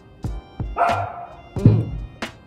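A boy's short pained cries and a gasp from the burn of an extremely hot chip: a breathy outburst about a second in, then a louder yelp near the end with a thump. Background music plays underneath.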